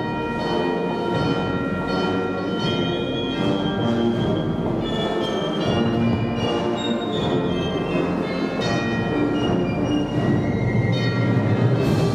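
Guatemalan procession band of brass and woodwinds playing a hymn, with held notes over drum beats, growing a little louder near the end.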